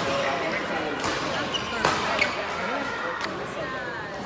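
Badminton racket strikes on a shuttlecock during a rally: a few sharp, separate hits over the few seconds, the loudest about two seconds in, heard in a large hall.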